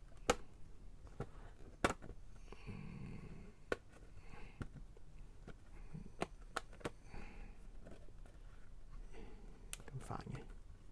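Hard plastic action-figure parts clicking and tapping as a translucent effect ring is handled and fitted by hand: several sharp, separate clicks, the two loudest within the first two seconds.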